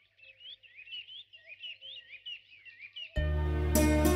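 Small birds chirping in quick, repeated short calls. About three seconds in, background music comes in suddenly and much louder.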